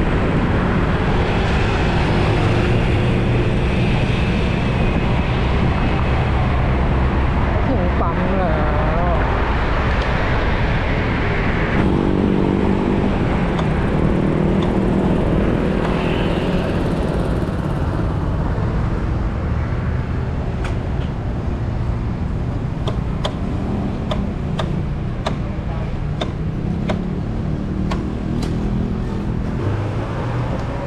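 Wind and road noise from riding a Yamaha Grand Filano Hybrid 125 cc scooter through light traffic, with the scooter's engine and passing cars underneath. The noise eases in the second half as the scooter slows to a stop, and a scatter of sharp clicks comes in over the last ten seconds.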